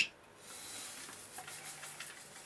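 Fine metal filings pouring out of a cordless metal-cutting saw's plastic chip-collection box onto a wooden bench: a faint, steady, sandy hiss that starts about half a second in.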